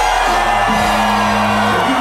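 Club music playing loud over a nightclub sound system during a DJ set, with low bass notes held through the middle.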